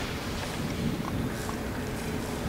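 Steady background noise with a low rumble and hiss, with no speech.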